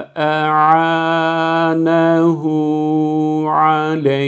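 A man reciting the Quranic phrase 'wa a'ānahu 'alayhi' in tajweed style, a slow chant with long vowels held on a steady pitch. It is one drawn-out line, with a brief breath right at the start.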